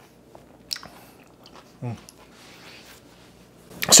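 A person chewing a spoonful of cold gazpacho with a cucumber slice, quiet mouth sounds with a sharp click under a second in. About two seconds in comes a short, falling "mm" of approval, and there is another click near the end.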